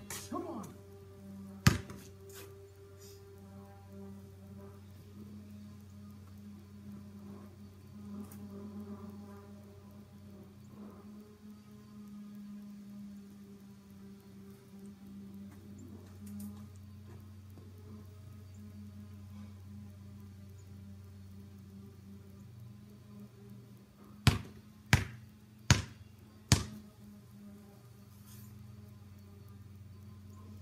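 A basketball bounced on a concrete driveway: once about two seconds in, then four times in quick succession, about 0.7 s apart, near the end, as dribbles before a free throw. A steady low hum of background music runs underneath.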